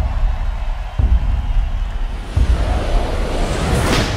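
Music: slow, heavy bass-drum beats about every second and a third over a sustained wash of sound, swelling into a rising rush near the end.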